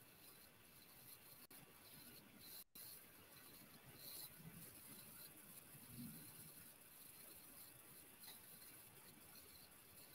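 Near silence: room tone with a few faint, soft sounds.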